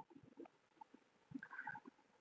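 Near silence: room tone, with a few faint brief sounds near the end.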